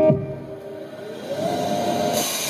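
Live music: a held chord breaks off at the start and the sound drops away. About a second in, a single note slides upward and is held.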